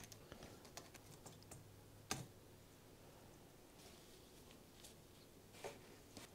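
Near silence broken by a few faint, small clicks and taps of hand work on a laptop's heatsink and motherboard, with one sharper click about two seconds in and another near the end.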